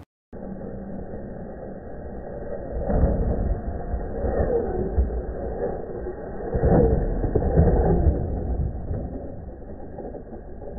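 Tamiya CR-01 RC rock crawler's electric motor and gears whining, the pitch rising and falling with the throttle, muffled. Two heavy thumps about three and seven seconds in, the later one as the truck drops off a concrete curb and lands on the pavement.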